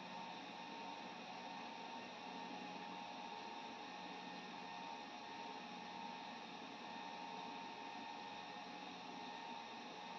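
Faint, steady whir with a low hum from an HPE ProLiant DL380 Gen10 server running through its boot self-test.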